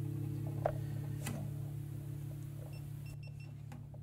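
Acoustic guitar's last chord ringing out, its low notes sustaining and slowly dying away. There is a faint click about two-thirds of a second in.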